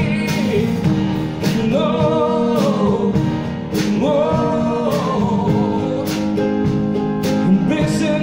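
A live band playing a pop ballad: a male singer holds long, gliding sung notes over acoustic guitar and a drum kit with regular cymbal and drum hits.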